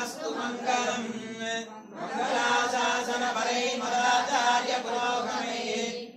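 A voice chanting Hindu puja mantras in a steady recitation, with a brief pause for breath about two seconds in.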